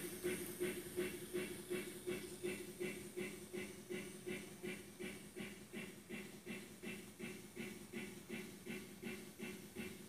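Faint rhythmic train sound effect from an MRC Sound Station model railroad sound unit: a regular beat about three times a second over a low steady hum.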